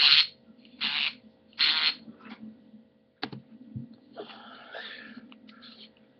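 Hands working the threaded hood off an aluminium flashlight by twisting it hard: three short hissing bursts about a second apart, a single sharp click a little after the middle, then faint rubbing and handling.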